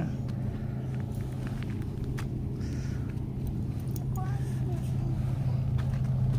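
Steady low drone of a diesel locomotive engine, growing slightly louder as the train approaches. A brief faint voice comes in about four seconds in.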